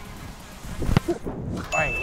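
A football kicked hard about a second in, a single sharp thud, followed by a steady ringing ding chime marking the penalty as scored. Voices start over the chime near the end.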